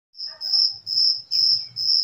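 A cricket chirping steadily, a high-pitched chirp repeated about twice a second.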